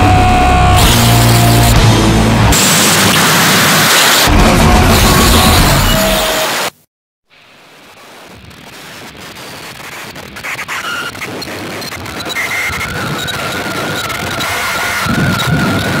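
Harsh noise music: a dense, loud wall of distorted noise with heavy low end cuts off abruptly about seven seconds in. After a half-second silence, a thinner hissing noise fades up gradually, and a steady high tone enters near the end.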